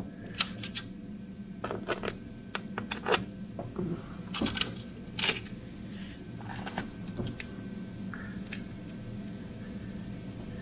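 Metal hand tools clinking and rattling as a socket and extension are picked out of a tool tray: a run of sharp, uneven clinks with short metallic rings, dying away after about seven seconds.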